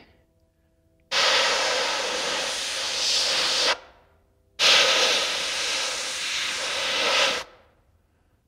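Airbrush spraying black ink: two hisses of air, each about two and a half seconds long, starting sharply and tailing off, with a short pause between.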